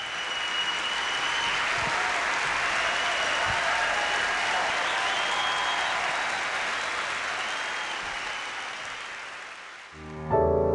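A large audience applauding, a dense steady clatter of clapping that swells at the start and fades out near the end.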